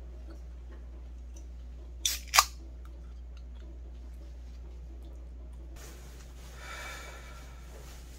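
Aluminium drink can opened by its pull tab: two sharp snaps about two seconds in, the second the louder. Later, a soft rustle of a plastic raincoat being put on.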